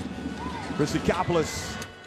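Basketball arena sound during live play: voices from the crowd and the bench over a steady background murmur, with a few short knocks from the court.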